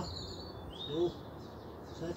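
Garden birds singing with high, thin chirps and short whistled phrases. A brief lower-pitched sound about a second in is the loudest moment.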